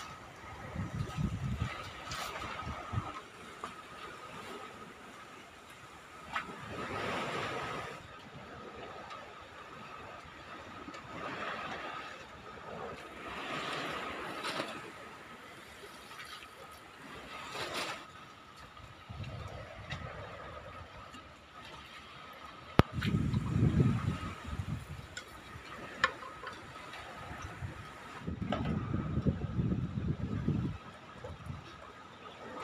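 Waterside ambience: water sloshing in swells that rise and fade every few seconds, with a faint steady whine behind it. Low gusts of wind buffet the microphone twice in the second half, and a sharp knock past the middle is the loudest sound.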